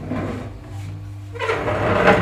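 Steady low hum of an electric potter's wheel, with a rough wooden scrape about one and a half seconds in, loudest at the end, as a wooden board is slid across a surface.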